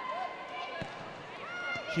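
Pitch-side match sound: faint players' shouts and calls, with a single thud of a football being kicked a little under a second in.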